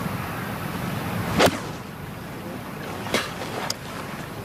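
A golf club striking the ball with a single sharp crack about one and a half seconds in, over the steady low noise of a gallery. A second, fainter click follows about three seconds in.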